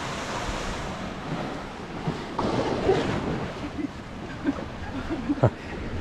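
Small sea waves washing up onto a sandy beach below, with wind buffeting the microphone; the wash swells a little past two seconds in.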